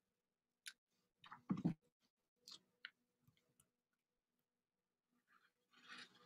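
Near silence in a small room, broken by a few faint clicks and one brief louder sound about a second and a half in. Near the end a pen begins scratching across paper as drawing starts.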